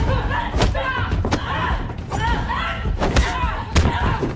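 Fight-scene hits: a quick series of punch and body impacts, about six or more in four seconds, with fighters' short grunts and exertion cries between them.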